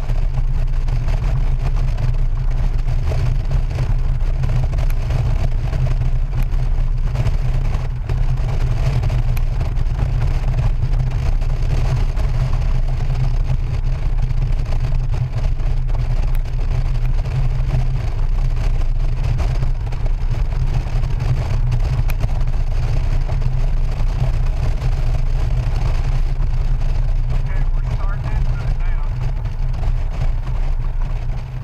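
Steady low rumble of wind buffeting the microphone, with road noise, from a Honda Gold Wing GL1800 motorcycle cruising at highway speed.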